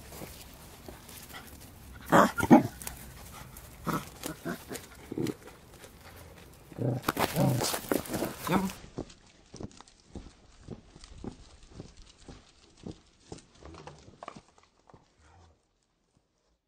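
Pembroke Welsh Corgi puppies making short barks and play noises, loudest about two seconds in and again around seven to eight seconds in. After that, soft scuffing and ticking of small paws on gravel and stone.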